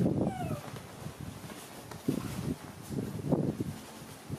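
A baby macaque gives a short, falling squeal right at the start, over rustling and crumpling of a non-woven fabric shopping bag that it is scrambling into. The rustling comes in uneven bursts.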